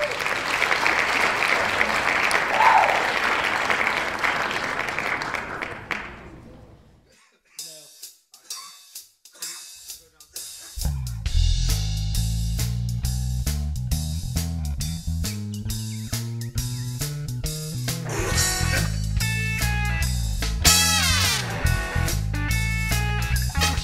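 A noisy wash that fades out over the first six seconds, then a few sparse notes, and about eleven seconds in a full band comes in: a rock song with electric guitar, bass guitar and drums.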